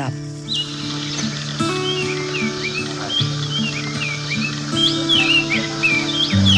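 Background music of held low notes that change about every second and a half, with birds chirping over it in many short, quick calls.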